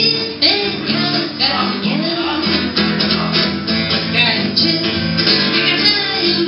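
Live rock song: a woman singing to her own strummed guitar, the chords struck in an even rhythm.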